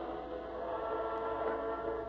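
Opera orchestra holding sustained chords in a historic live recording, with a steady low hum underneath.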